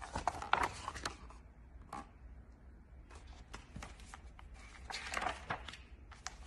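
A large picture book being handled: page rustling, with scattered light taps and clicks.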